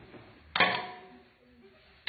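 A single sharp strike about a quarter of the way in, ringing briefly at a few steady pitches before it fades.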